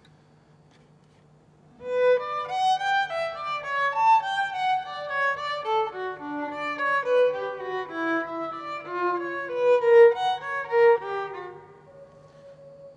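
Unaccompanied violin played with the bow, starting about two seconds in: a melody of quick separate notes that dips low in the middle and climbs again, stopping just before the end.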